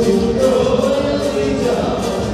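Live dance band music with singing, playing steadily.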